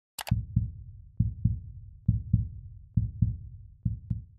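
A sharp click just after the start, then a low, dull double thump repeating about once a second, five times, like a heartbeat: an intro sound effect.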